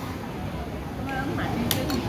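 Background chatter of people in a busy indoor space, with a single sharp plastic click near the end as chunky toy building blocks are handled.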